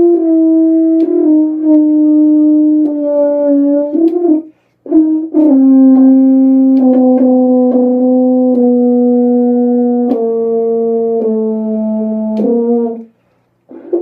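French horn played by a novice, a saxophonist new to brass, working down a descending chromatic scale of held notes, each about a second long and stepping down in pitch. There are two breaths with a short break between them; the second run goes lower and stops shortly before the end.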